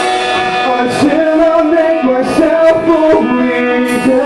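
A rock band playing live: electric guitar and drums, with a male singer's sustained, sliding vocal notes.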